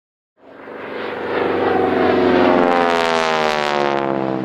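Airplane flying past, swelling in and then dropping in pitch as it goes by.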